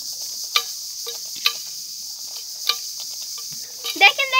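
Insects droning steadily in a high band, with a few sharp taps, three in all, that fit a hen's beak pecking grain from a steel bowl.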